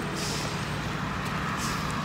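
Steady outdoor rumble of road traffic, with two brief hissing swells, one early and one near the end.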